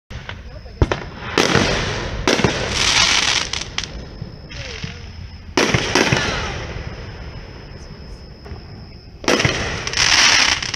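Aerial firework shells bursting overhead: sharp bangs, several followed by a hissing crackle that fades, coming in three clusters — from about a second in, around six seconds, and again near the end.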